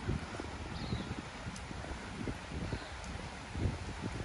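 Footsteps on a wet paved path, a series of soft low thumps, over steady wind noise on the microphone.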